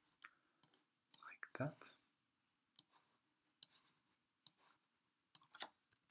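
Faint computer mouse button clicks, several of them at irregular intervals.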